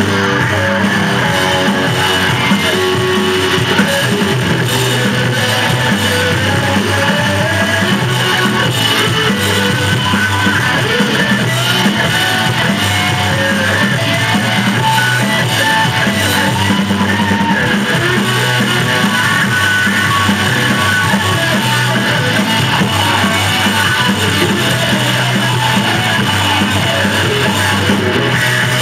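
Live rock band playing an instrumental passage: electric guitars, bass guitar and drums, loud and continuous.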